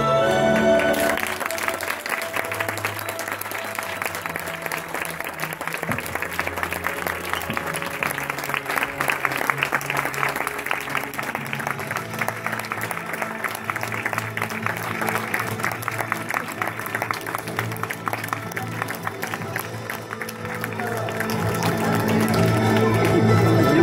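A crowd clapping steadily over background music. The applause starts about a second in and thins out near the end.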